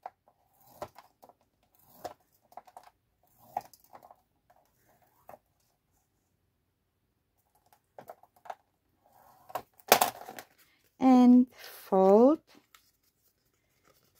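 Bone folder scoring lines into thin book-page paper on a plastic scoring board: faint, scattered short scraping strokes. A sharp clack comes about ten seconds in, followed by two short wordless vocal sounds from the crafter.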